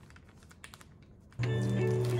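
Faint small clicks of a plastic zip-top freezer bag's seal being pressed shut with the fingers. About one and a half seconds in, louder background music with held notes starts.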